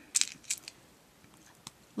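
Small clear plastic buttons clicking against each other and their plastic container as fingers pick one out: a few light clicks in the first second and one more near the end.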